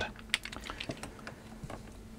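Irregular light clicks and taps of small hard plastic electrical plugs with brass pins being handled and set down on a work mat, the sharpest click about a third of a second in.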